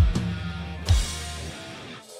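Metal band of drum kit and distorted electric guitar playing the last bars of a song. A final accented hit comes about a second in; then the guitar chord stops and the cymbal rings out and fades.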